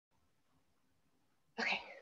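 Near silence, then about one and a half seconds in a short burst of sound from a woman's voice, cut off just before the end.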